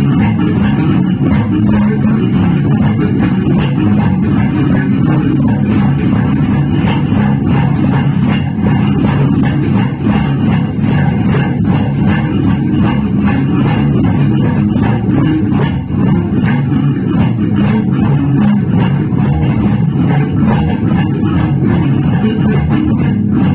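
Electric bass guitar played fingerstyle: a continuous, busy jazz-funk groove of low plucked notes, with steady fast high ticks running over it.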